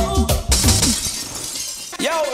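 A reggae vocal track with heavy bass is cut off about a quarter of the way in by a shattering-glass sound effect that trails away over the next second and a half, marking a transition in a live DJ mix.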